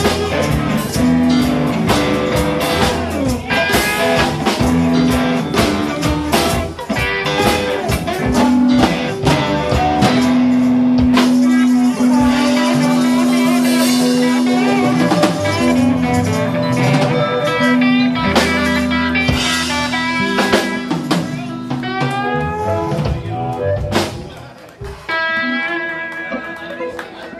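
Live electric blues band playing an instrumental stretch: electric guitars, drum kit and harmonica over a shuffling beat, with a long held note through the middle and bending high notes later on. The music thins out about 24 seconds in as the song winds down.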